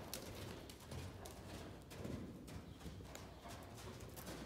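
Faint hoofbeats of a horse moving around a circle on soft sand arena footing, a few irregular dull thuds.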